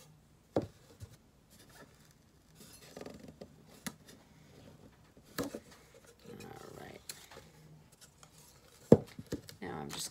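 Handling noise from a framed wooden sign blank with a cardboard back being turned over on a craft table: scattered light knocks and rustles, with one sharp knock about nine seconds in.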